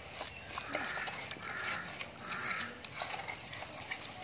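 Faint outdoor ambience: a steady, high-pitched insect drone throughout, with a few faint, short animal calls in the middle.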